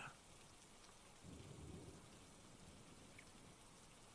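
Faint, steady background rain ambience, with a soft low rumble swelling about a second in.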